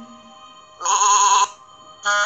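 One wavering sheep bleat from the animated app's soundtrack, about a second in and lasting about half a second, over soft steady background music.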